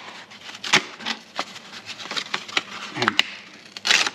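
Stiff, old gasket paper crackling as it is handled and torn off the roll, with a louder tearing rasp near the end.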